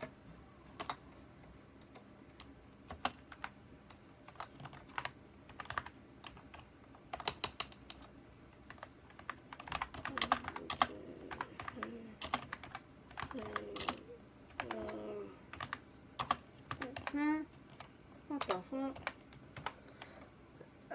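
Typing on a computer keyboard: irregular key clicks, sparse at first and coming thicker from about halfway.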